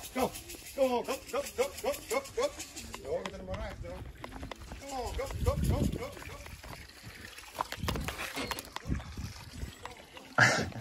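Indistinct speech, quieter than the talk around it: a voice in short, quickly repeated syllables, with a low rumble about five seconds in.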